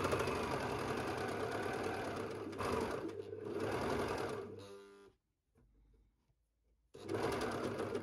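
Overlocker (serger) running fast as it stitches a seam in jersey knit fabric. It slows into separate stitches and stops about five seconds in, then starts up again about two seconds later.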